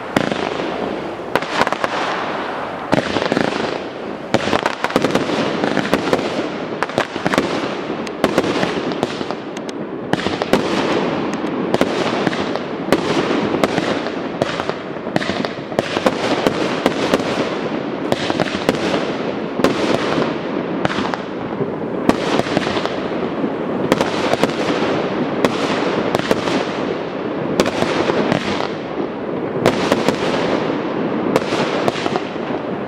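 Aerial fireworks display: a dense, continuous barrage of launches and shell bursts, with many sharp bangs in quick succession over a steady rushing noise.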